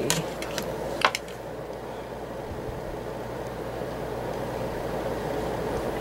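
A few light taps and clicks as paper and a plastic ruler are handled on a table, the sharpest about a second in, over a steady low background hum.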